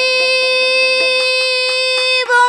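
A woman's voice holding one long, very steady high note in a Bengali baul song, with light, regular percussion strokes beneath.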